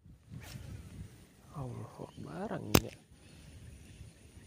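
A man's wordless voice, sliding up and down in pitch for about a second and a half, then one sharp click, over faint outdoor background and handling noise.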